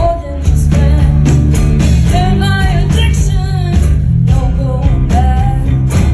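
Live blues-rock band playing with a woman singing lead: bass, drums and electric guitar, with her voice in sung phrases over them. The band drops out for a moment at the very start and comes back in about half a second in.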